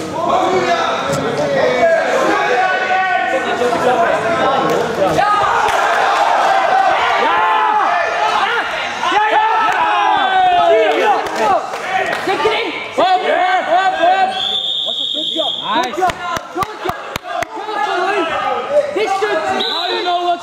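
Several people shouting nearly without a break in a large hall, with a steady high whistle blast lasting about a second and a half roughly three-quarters of the way through, followed by a quick run of sharp knocks.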